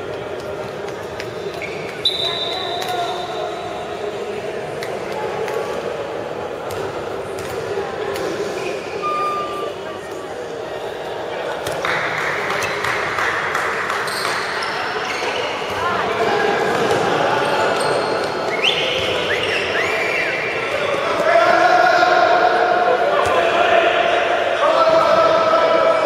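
Handball bouncing on a gym court during play, with voices shouting in a large echoing hall. The voices grow louder near the end and turn into crowd chanting.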